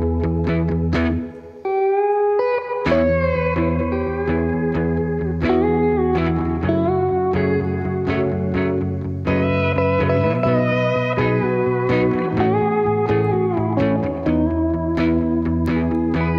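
Pedal steel guitar playing an instrumental solo of gliding, sliding notes over a steady low backing. About a second and a half in, the backing drops out for about a second, leaving the steel alone, then comes back.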